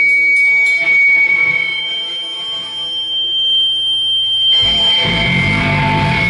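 Electric guitar amplifier feedback between riffs: a steady high whine rings over a fading chord, and a second, higher whine joins about two seconds in. Distorted guitar and bass start playing again a little past halfway.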